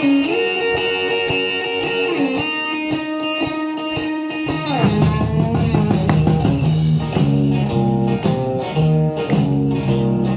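Instrumental intro of a 12-bar blues shuffle led by electric guitar. Sustained guitar notes with a bend come first, then about five seconds in the full band comes in with drums and a driving low shuffle riff.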